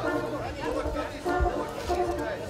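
Wind quintet playing a charleston, with held notes in the winds and horn, and people's voices chattering over the music.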